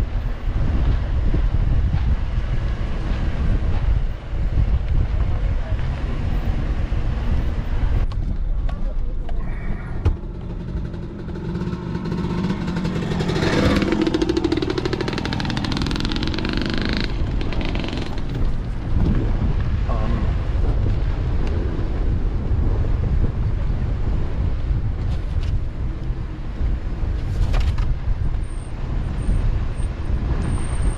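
4x4 vehicle driving slowly on a dirt trail: a steady low rumble of engine and tyres over dirt and gravel, with a louder swell of noise for a few seconds around the middle.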